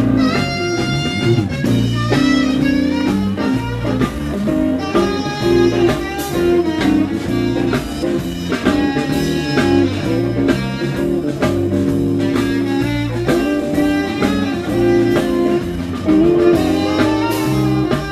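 Live blues band playing an instrumental stretch without vocals: a lead line of bending notes over guitar, bass and drums.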